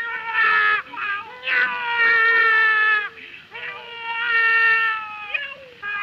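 A man imitating a cat, giving a run of long, drawn-out meowing yowls one after another, each held at a steady pitch and dropping off at its end.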